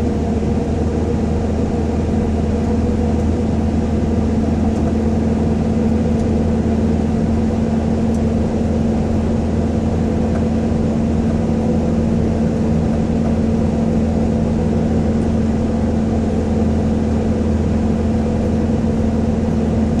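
Car cabin noise while driving at a steady speed through a road tunnel: an even engine and tyre drone with a constant low hum.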